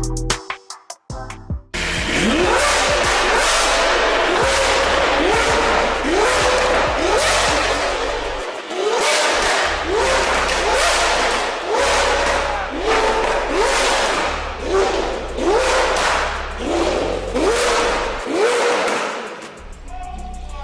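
Lamborghini Aventador SV's 6.5-litre V12 through a catless, valved Fi Exhaust system, revved in repeated quick throttle blips at about one a second, starting about two seconds in. The pitch rises sharply with each blip and then drops back.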